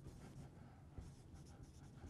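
Faint dry-erase marker strokes on a whiteboard as words are written, with a small tick about a second in, over a low room hum.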